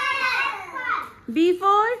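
Young children's voices speaking, with a short break about a second in, then a call that rises in pitch.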